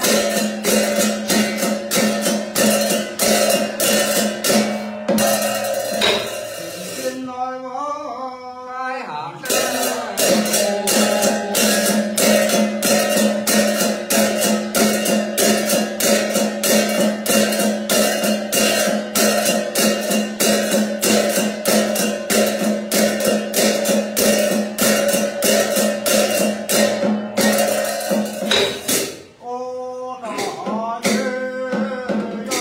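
Tày ritual music: a fast, even beat of sharp percussive strokes, about four a second, over a steady held tone. The beat breaks off about seven seconds in for a short chanted phrase, then resumes, and another chanted phrase begins near the end.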